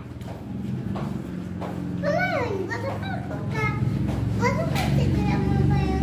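Young children's high voices calling out in short rising and falling bursts, over a steady low hum.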